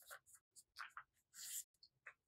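Faint rustling and crinkling of white paper being folded by hand, in a few short bursts.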